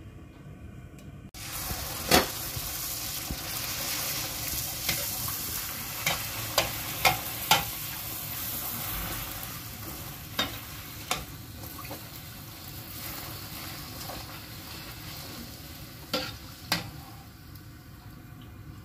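A puri deep-frying in hot oil: a steady sizzling hiss starts suddenly a second or so in and slowly eases off. Sharp clicks of a metal slotted spoon against the metal pan come through it, a run of them in the first few seconds and a pair near the end.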